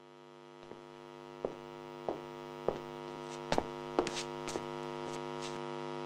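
Electrical mains hum with a buzzy stack of overtones, fading in from silence and slowly swelling. Sharp crackles break through it every half second or so, coming more often from about halfway through.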